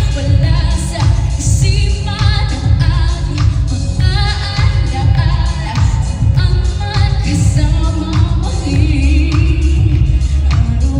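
A woman singing a pop song into a microphone over loud amplified backing music with a heavy bass beat, her held notes wavering with vibrato.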